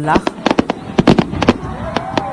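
Fireworks going off: a rapid, irregular string of sharp cracks and bangs, about a dozen in two seconds.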